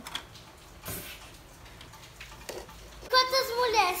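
A few light clicks and knocks of plastic toy dishes being handled in a plastic toy basket, then a high-pitched voice starts talking loudly about three seconds in.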